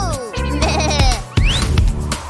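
Children's song backing music with cartoon sound effects: a short stuttering cartoon voice, then a quick rising whistle-like zip as the character dashes away.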